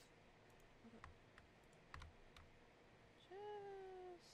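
Quiet room with a few soft computer keyboard and mouse clicks. Near the end comes one short pitched vocal sound, held for under a second and dipping slightly in pitch.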